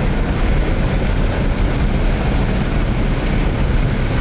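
Dodge car's V6 engine driven at speed, its running mixed with road and wind noise as heard from inside the cabin; loud and steady.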